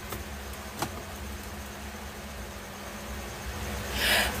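Steady low hum and hiss of background noise, with one short click just under a second in.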